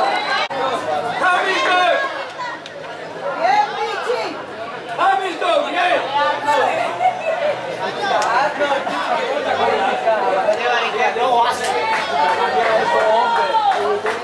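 Several people talking and calling out over one another close to the microphone: crowd chatter with no single clear voice.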